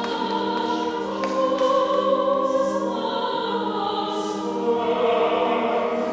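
Congregation singing a hymn, with voices carried over steady, sustained organ chords.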